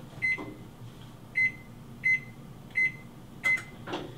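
Electric range oven control panel beeping five times as its touch keys are pressed to set the oven to preheat to 325°F, each beep short and high-pitched.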